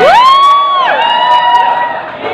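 A woman singing a very high note into a microphone: her voice sweeps sharply up, holds the note for most of a second and drops away, then holds a second slightly lower note, with a crowd cheering behind.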